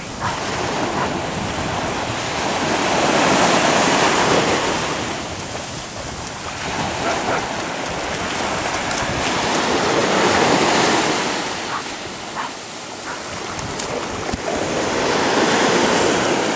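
Ocean surf washing in and out, swelling and fading in slow surges about every six seconds, with some wind on the microphone.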